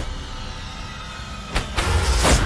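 Added fight sound effects: a steady low rushing rumble, then sharp whooshes and hits about one and a half seconds in.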